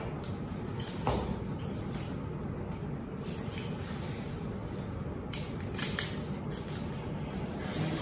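Handling noise: fabric rustling with scattered small clicks and taps as equipment is fitted on a seated person, the sharpest clicks about a second in and again around six seconds in.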